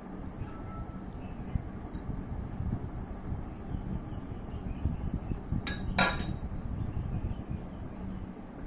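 A steel spoon knocking and clinking against glass bowls as jaggery and powder are spooned into a glass mixing bowl. Soft knocks run throughout, with two sharp clinks a little past the middle, the second the loudest.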